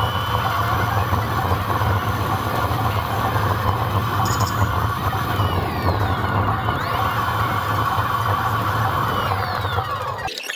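Steady traffic and riding noise on a city street: a loud, continuous low engine drone with a higher whine that bends down in pitch near the end.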